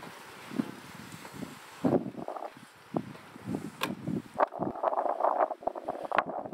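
Scattered knocks and rubbing from a handheld camera being carried along a pier, with footsteps and wind on the microphone; a few sharp clicks come in the second half.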